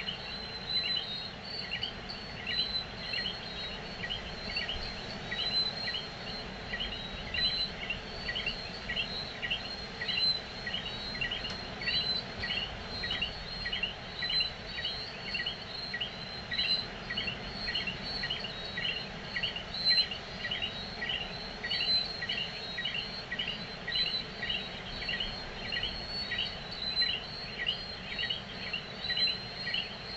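Tropical night chorus of calling insects and frogs: a steady high trill with a sharp chirp repeated about twice a second over it.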